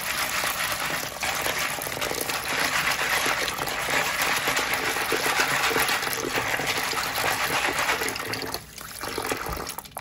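Tap water pouring into a plastic bowl of dry pinto beans while a hand swishes and rubs them to rinse off the dirt. The flow drops off shortly before the end.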